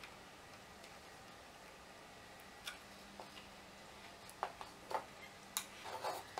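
Faint handling noises from a metal floppy-drive chassis and its cable connectors: a few scattered sharp clicks and ticks, mostly in the second half, over a faint low hum.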